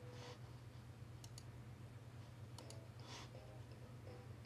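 Faint computer mouse clicks, coming in two quick pairs, over a low steady hum, with two short soft hisses.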